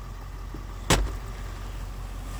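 A single sharp click about a second in, the pickup's plastic glove box door being pushed shut and latching, over a steady low hum.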